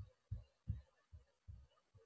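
Near silence with about five faint, short low thuds, evenly spaced roughly 0.4 s apart.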